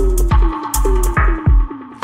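Bass-heavy electronic music from a DJ set: deep sub-bass and a drum-machine beat with sharp cymbal hits, over short synth notes that drop in pitch and repeat several times a second.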